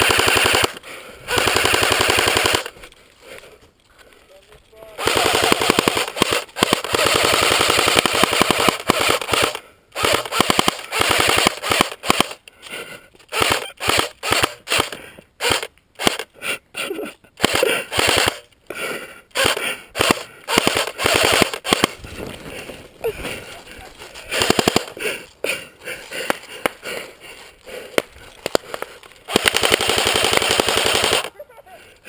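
Airsoft rifle firing in rapid full-auto bursts: two bursts in the first couple of seconds, a pause, then from about five seconds in a near-constant string of short and long bursts.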